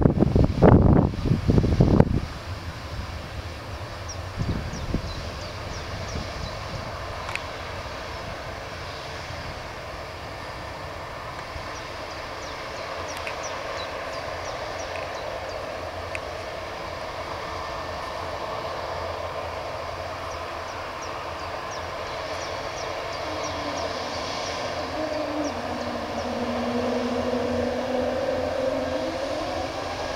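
Airbus A220's Pratt & Whitney PW1500G geared turbofans running at low power as the jet taxis, a steady hum. Near the end a whine rises in pitch as the engines spool up. Wind buffets the microphone loudly for the first two seconds.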